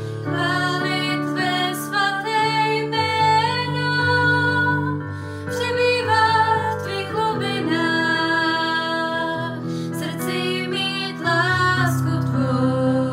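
A Czech worship song: a woman singing a slow melody over instrumental accompaniment.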